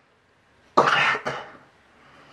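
A man coughs once: a single sudden, harsh burst a little under a second in, lasting about half a second.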